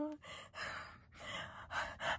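A woman's soft, breathy gasps: a drawn-out 'oh' trails off, then about four short unvoiced breaths in and out, like silent laughter.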